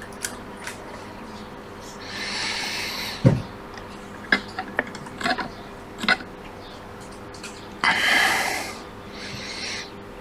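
A few heavy breaths close to the microphone, with small clicks and one sharp knock from a metal probe and tweezers working on a tablet's logic board. A faint steady hum runs underneath.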